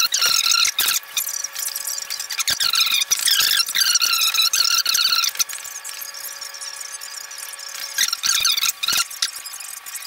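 Ironing board squeaking as an iron is pushed back and forth over it: a run of high, wavering squeaks that stops about halfway through and comes back briefly near the end, over a faint steady hum.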